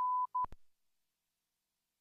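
Broadcast line-up test tone, a steady 1 kHz sine tone sent with colour bars, which stops a quarter of a second in, returns as a short blip and ends in two sharp clicks as the feed is switched. Bars and tone going out in place of programming is the sign of a transmission breakdown.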